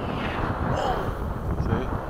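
Wind buffeting the microphone, with faint fragments of voices; no distinct motor sound stands out from the wind.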